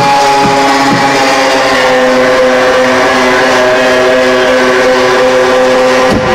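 House/techno music played loud over a club sound system, in a breakdown: the kick drum drops out about a second in, leaving held synth chords.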